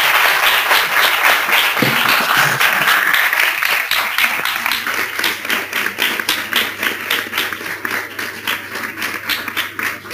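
Congregation applauding after a sermon: dense clapping that gradually thins out and grows quieter toward the end.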